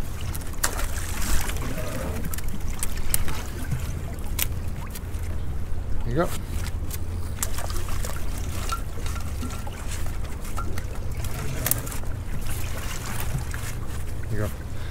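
Steady low rumble of a small boat idling at sea, with scattered clicks and knocks of gloved hands working inside a lobster pot to pull out a crab.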